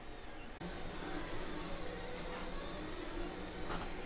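Monoprice Mini Delta 3D printer running a print: a steady, noisy mechanical whir with a faint low hum, which starts about half a second in.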